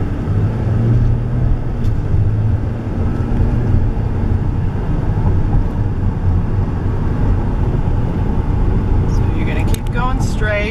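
Steady low rumble of engine and tyre noise inside a car's cabin while driving along a city street.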